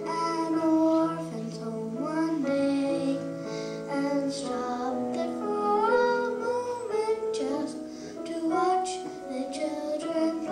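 A group of children singing a song together, holding long notes as the tune steps up and down.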